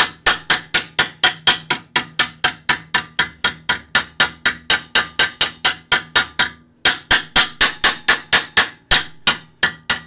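Hammer rapidly tapping a thin sheet-metal front brake dust shield, about five sharp metallic strikes a second with a brief pause about two-thirds of the way through. The shield is being bent inward so the thicker big-brake-kit rotor and caliper will clear it.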